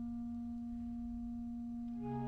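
A single woodwind instrument holding one long, steady low note.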